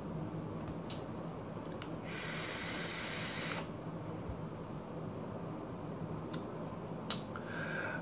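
A person taking a hit from a vape mod with a dripper atomiser: a hiss of breath and vapour lasting about a second and a half, about two seconds in, and a fainter hiss near the end. A steady low hum sits underneath.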